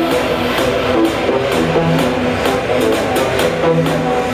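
Music with a steady beat and repeating pitched notes.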